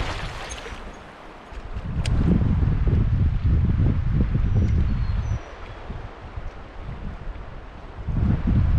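Wind gusting across the microphone: an uneven low rumble that swells about two seconds in, holds for a few seconds, then drops back to a weaker buffeting.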